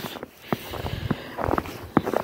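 Footsteps in fresh snow, a few soft steps about half a second apart, over a steady rushing hiss.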